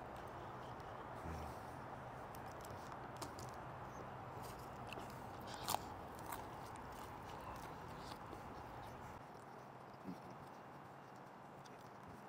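Faint biting and chewing of a burrito, with scattered small mouth clicks and one sharper click a little before halfway, over steady low background noise.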